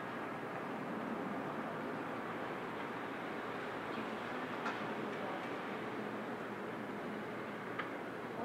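Steady hiss of the steam locomotive 46100 Royal Scot standing at the platform with its train, with a couple of sharp clicks, one about halfway through and one near the end.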